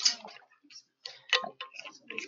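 Indistinct chatter of students talking among themselves in a classroom, broken by a few short, sharp clicks, the loudest at the very start and about a second and a third in.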